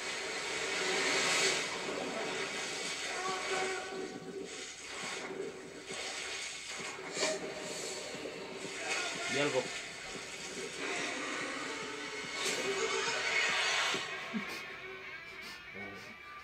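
Horror film trailer soundtrack: a steady low drone under a hissing wash that swells and fades, with faint voices now and then.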